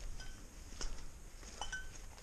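Footsteps on dry fallen leaves on the forest floor, with two brief high clinking notes, one near the start and one near the end.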